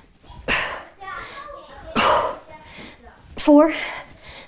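A woman's sharp, forceful exhalations in time with kettlebell swings, about one every second and a half, the last one voiced like a short grunt. Children's voices are faint underneath.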